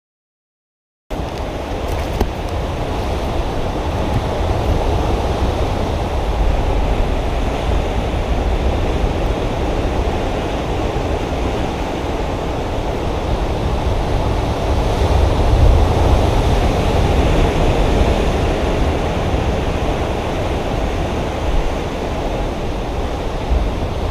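Steady rushing noise of surf and wind, with a heavy low rumble of wind on the microphone. It starts abruptly about a second in and holds level throughout.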